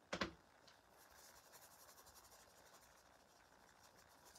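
A short knock as a small pot is set down on the work mat, then faint scratchy brushing as a thin paintbrush works over the textured cover.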